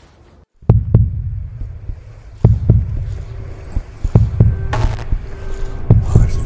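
Open-air lake ambience: an uneven low rumble of wind buffeting the microphone with small waves, starting after a short quiet, with scattered sharp knocks and a brief hiss about five seconds in.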